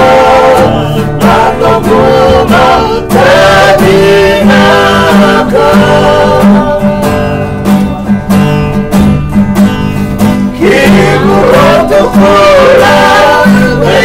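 A group of men singing a Fijian song in harmony to two strummed steel-string acoustic guitars. The voices ease back in the middle, then come in strongly again about ten seconds in.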